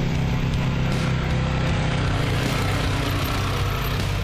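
Farm tractor engine running steadily while the tractor pulls a disc harrow through grassy ground.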